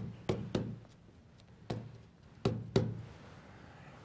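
Stylus tapping and knocking on the glass of an interactive touchscreen display during handwriting: about five sharp, separate clicks spread over a few seconds.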